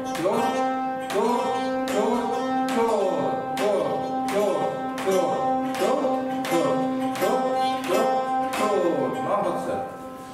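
Four chatkhans, Khakas plucked zithers, played in unison: one repeated note plucked together about twice a second, each pluck ringing on into the next. The plucking stops just before the end.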